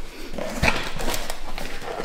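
Cardboard shipping box being opened by hand: flaps scraping and creaking as they are pulled up, with several short knocks of cardboard.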